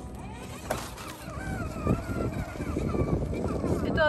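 Redcat Marksman TC8 electric RC rock crawler driving over rocks, with rough knocks and scrapes from its tyres and drivetrain that grow busier in the second half, under a faint voice.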